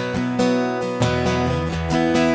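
Acoustic guitar strumming chords in an acoustic pop song, with a change of chord about halfway through.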